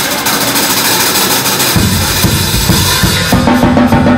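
Jazz drum kit playing on its own in a break: a dense cymbal wash with busy snare strokes. Low drum hits join after a couple of seconds, and the band's pitched instruments come back in a little after three seconds.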